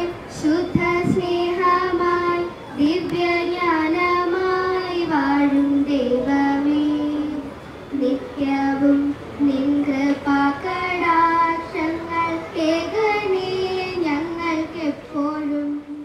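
Young schoolgirls singing a song into a microphone, one melody in long held notes.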